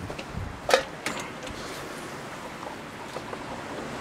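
Steady outdoor wind rush, with a single short knock a little under a second in.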